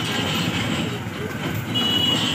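Mixed road traffic crossing an open level crossing: truck and motorcycle engines running steadily, with a short high-pitched beep near the end.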